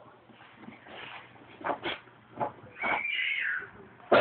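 A Lhasa Apso giving a few short yips, then a high whine about three seconds in that rises slightly and falls away.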